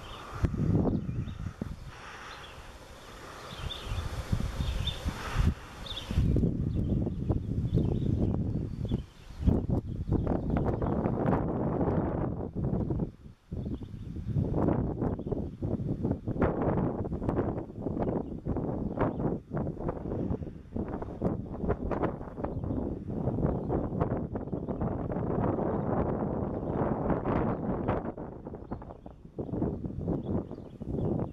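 Wind gusting across the camera microphone, a rough, fluctuating rumble that grows much stronger about six seconds in and keeps buffeting in gusts.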